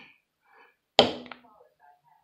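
A single sharp strike of a wooden mallet on a leather-stamping tool (a smooth triangle beveler) set on leather over a granite slab, about a second in, ringing briefly, with a light tap just after it.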